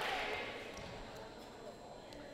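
Crowd and court noise echoing in a school gymnasium, dying away, with faint thuds on the wooden court.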